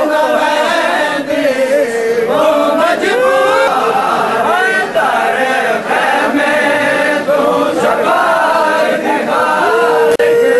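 A crowd of men chanting a noha, a Shia mourning lament, together in many voices, loud and unbroken.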